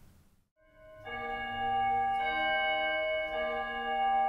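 A moment of silence, then organ music starts about half a second in: held chords of steady tones, changing chord a couple of times.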